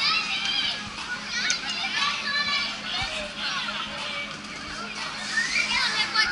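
Children riding a spinning fairground ride, calling out and squealing in high voices again and again, several at once.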